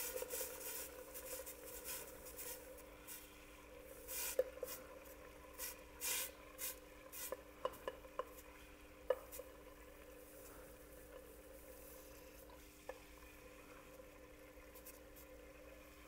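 Liquid nitrogen boiling around a room-temperature rubber ball held in a dewar, a faint irregular bubbling and crackling that thins out in the second half as the ball cools. A few sharper clicks stand out.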